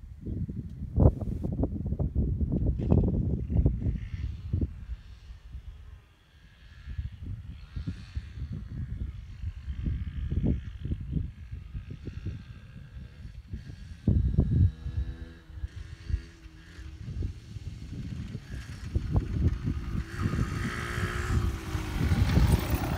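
Wind buffeting the microphone in gusts, with a Yamaha TDR 125's two-stroke single-cylinder engine coming up through it in the second half and growing louder as the bike approaches.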